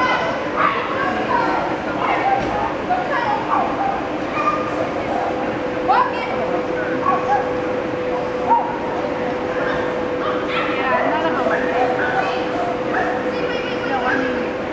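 Dogs barking and yipping in short, scattered high calls, some sweeping upward, over background voices and a steady hum, in a large hall.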